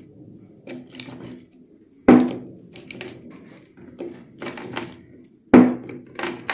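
Screwdriver tip scraping and pressing a sandpaper strip into the groove of a wooden sanding drum, with scattered light clicks and two sharp knocks, one about two seconds in and one near the end.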